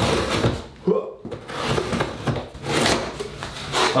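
Box cutter slicing through packing tape on a cardboard box in several scratchy strokes, with the tape tearing as the flaps are cut open.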